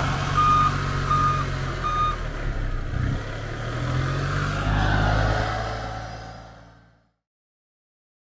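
Kubota tractor loader's diesel engine running, with its reverse alarm beeping steadily for about the first two seconds. The engine rises briefly around five seconds in, then the sound fades out to silence near the end.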